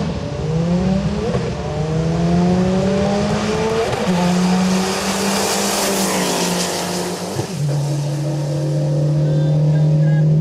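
Drag-racing cars, among them a turbocharged Ford Fiesta ST, accelerating hard from the line, their engine pitch rising through each gear and dropping back at shifts about one, four and seven and a half seconds in. A rush of noise swells and fades as the cars pass about six seconds in, and a steady engine tone holds near the end.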